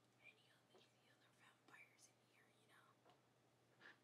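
Near silence: room tone with faint whispered speech under the breath.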